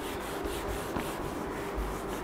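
Whiteboard being wiped with a cloth duster: a steady dry rubbing in quick repeated strokes.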